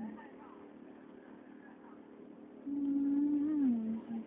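A person humming close to the microphone: one held note of about a second that slides down in pitch near the end, over faint voices.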